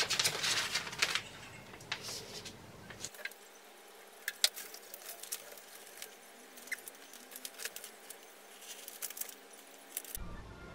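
Sheet of plastic frosted window privacy film rustling and crinkling as it is handled and pressed onto window glass. There is a burst of rustling in the first second, then scattered light crackles and taps.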